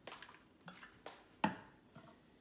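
Several light clicks and knocks of kitchen handling as a plastic squeeze bottle of lemon juice is put down on the stone counter, the loudest knock about one and a half seconds in.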